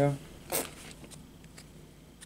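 Paper baseball cards sliding against each other as one is moved off a stack. There is one short scrape about half a second in, then faint handling of the cards.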